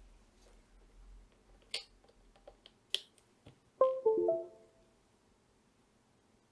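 A few small clicks of a USB plug being pushed into an ESP32 development board, then, about four seconds in, a short computer chime of falling notes: the computer registering the newly connected USB device.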